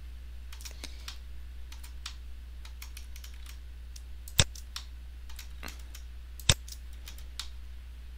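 Computer mouse clicking repeatedly as faces are selected one by one, with two louder clicks about four and a half and six and a half seconds in. A steady low electrical hum runs underneath.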